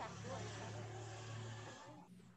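Faint speech away from the microphone over a steady low electrical hum and hiss, which cut off abruptly near the end.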